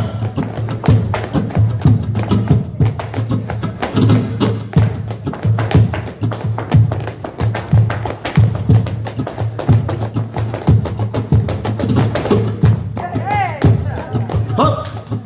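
Flamenco zapateado: a dancer's heeled flamenco shoes striking a wooden floor in a fast, continuous rhythm of sharp heel and toe strikes. A voice calls out near the end.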